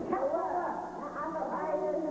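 Several children's high-pitched voices talking and calling out over one another.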